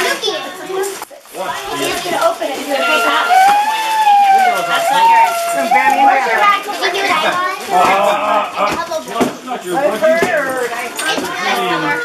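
Excited children's voices and adult chatter overlapping, with one long drawn-out high voice note held for about three seconds partway through.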